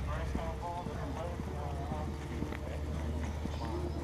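Footsteps knocking on concrete pavement, with the faint voices of people chatting a short way off, over a steady low rumble.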